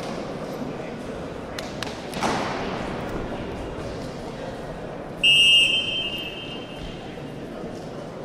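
A referee's whistle gives one short blast to start a freestyle wrestling bout, over the murmur of a crowd in a large hall. A single thud comes about two seconds in.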